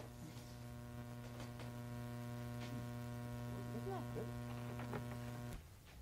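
Steady electrical mains hum in the recording, a low buzz with a stack of even overtones, that cuts off suddenly near the end.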